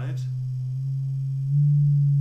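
Roland SH-101 filter self-oscillating at full resonance, giving a steady low sine tone near the note C while the cutoff is fine-tuned by hand. The tone gets louder about one and a half seconds in.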